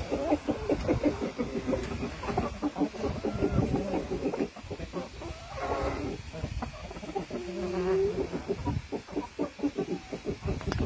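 Black mottled Cochin chickens clucking continuously in short, repeated calls, with one longer drawn-out call about seven and a half seconds in.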